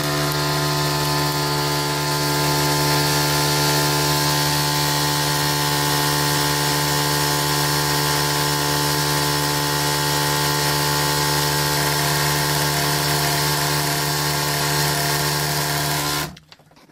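Small electric motor spinning a homemade magnet-and-coil generator, a converted microwave fan, at steady speed. It gives a constant loud hum with a whine of many overtones that does not change in pitch or level.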